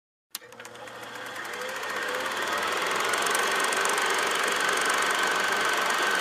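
Film projector sound effect: a rapid mechanical clatter of fine, even clicks with a whir under it. It starts after a moment of silence, fades up over the first two seconds or so, then runs steadily.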